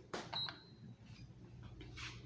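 Elevator call button pressed: a few clicks and one short, high beep, followed by a faint low hum.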